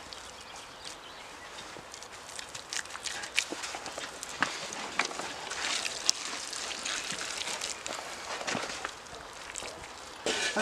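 Loose clay and straw rustling and crunching, with scattered small clicks. Clay is being packed by hand into the base of a clay furnace, and boots are shifting on straw-covered dirt.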